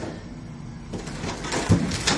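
Things being handled and moved around: a few light knocks and rustles, starting about a second in and getting louder toward the end.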